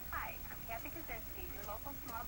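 A voice talking, thin and cut off in the highs as if heard through a small loudspeaker, such as a television or phone playing an advertisement.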